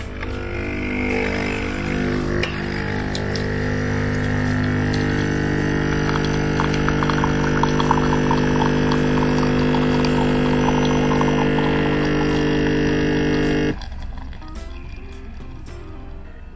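Nespresso Essenza Mini capsule machine brewing an espresso shot: its pump drones steadily while coffee splutters into the glass. The drone cuts off suddenly a couple of seconds before the end, when the shot is done.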